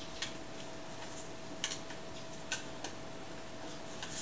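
A few faint, scattered clicks and taps, about four, from fingers working at the lid of a small hinged metal survival-candle tin to pry it open.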